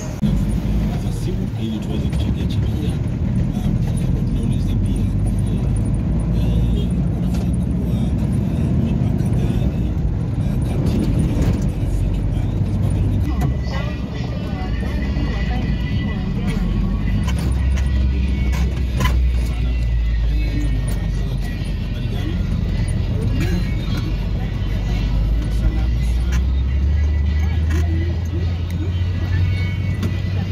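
Steady low rumble of a moving road vehicle's engine and tyres, heard from on board, with music and voices mixed in.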